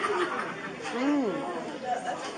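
Indistinct chatter of several people talking in a room, with one voice rising and falling about a second in.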